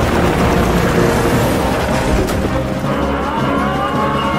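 A steady, loud engine sound effect over background music.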